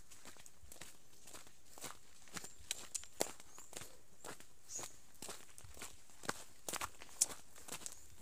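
Quiet, irregular footsteps crunching on dry leaf litter and loose stones along a dirt forest path.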